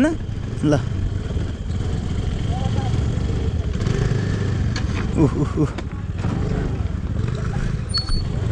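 Motor scooters running steadily at low speed over a rough dirt-and-rock trail.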